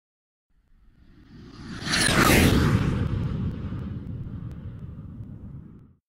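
A whoosh sound effect over a low rumble. It swells up over the first two seconds, with a thin falling whistle near its peak, then slowly fades away.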